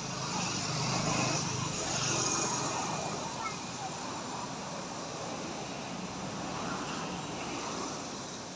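A road vehicle going by, its noise building over the first two seconds and then slowly fading.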